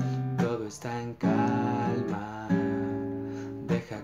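Cutaway classical guitar strumming slow chords, each struck chord left to ring for a second or so before the next.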